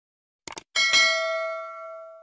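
Subscribe-animation sound effect: two quick clicks about half a second in, then a bright bell ding that rings on and fades away over about a second and a half.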